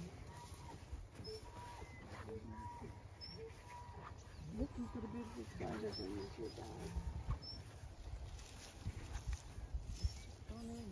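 Faint outdoor ambience: bleat-like animal calls, most likely distant sheep, with quiet murmured voices and a few short high bird chirps over a low rumble of wind on the microphone.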